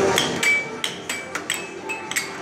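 Air hockey puck clacking against plastic mallets and the table's rails in rapid play, about seven sharp knocks in two seconds, some with a short high ring.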